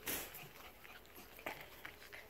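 Puppies moving about: one short, noisy puff near the start, then a couple of faint light clicks.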